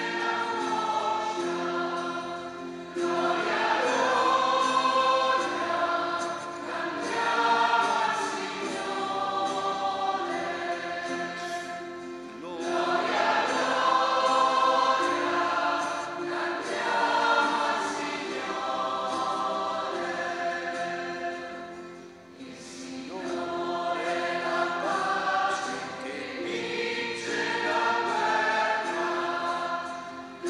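Choir singing a hymn in sustained phrases, with short breaths between lines.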